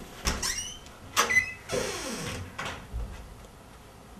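A front door being unlatched and opened: sharp clicks of the lock and latch with short squeaks, then a brief rush of noise as the door swings, and a softer click after.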